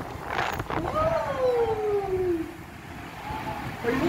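Storm wind and heavy rain against a high-rise window, a steady rushing noise. A long tone glides downward in pitch from about a second in, and the storm sound is quieter after that.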